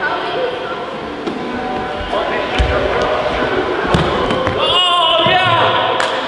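A basketball bouncing and thudding on a hardwood gym floor, with a few sharp impacts, over background music and voices.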